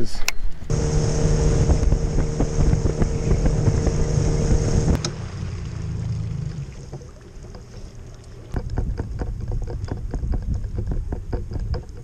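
A bass boat's outboard motor idling with a steady hum, dropping lower and quieter about five seconds in. From about eight and a half seconds in, a string of irregular rattles and knocks as the boat rides its trailer under tow.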